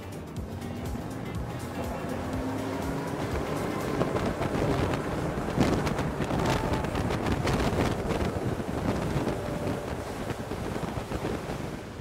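Twin outboard engines throttling up hard for a hole shot, the boat climbing onto plane: engine sound rising in pitch and loudness over the first few seconds, with wind on the microphone and water rushing past. Background music plays underneath.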